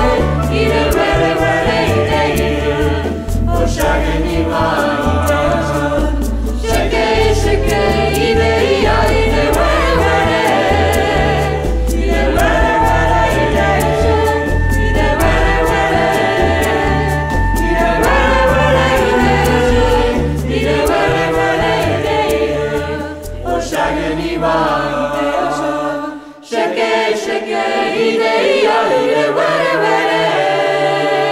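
Afrobeat-style recording with a group of voices singing together over a deep, pulsing bass line. About 26 seconds in the bass drops out with a brief dip in level, and the voices carry on without it.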